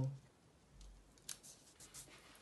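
A few short, faint clicks and light rustles as the teacher's geometric shape figures are handled and swapped.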